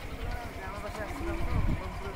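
Faint voices talking over water splashing as a mug of water is tossed onto a fishing net, with one louder splash about one and a half seconds in.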